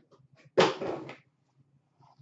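Cardboard hobby boxes being handled: one sudden scraping thump about half a second in that fades within about half a second.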